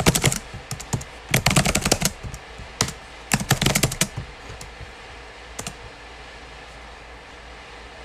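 Quick runs of sharp clicks or taps in several short bursts, then single clicks, trailing off into a faint low hum.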